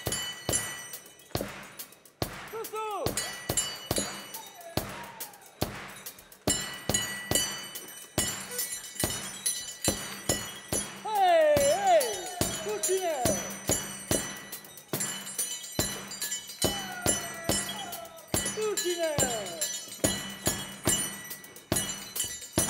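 Jingling, clinking percussion struck in an irregular beat, about two or three strikes a second, with a bright ringing over it. Voices shout gliding calls about halfway through and again near the end.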